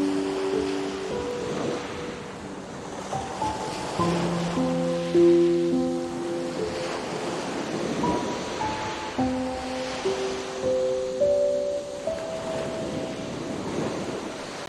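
Slow relaxation music of long held notes, changing every second or two, over a continuous wash of ocean waves breaking on a shore.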